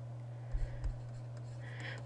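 Stylus writing on a tablet screen, with a few soft knocks about half a second in, over a steady low hum.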